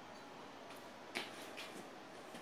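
A few faint, short clicks, the sharpest about a second in, from a DeWalt cordless drill's chuck being tightened by hand onto a tip-up's spool shaft.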